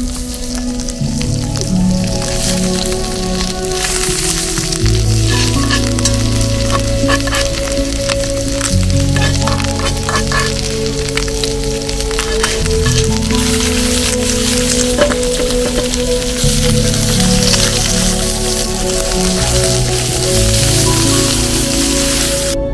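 Chicken thighs and garlic sizzling steadily in hot oil in a cast-iron pan over a wood fire, with occasional clicks of a spoon in the pan. Background music plays throughout.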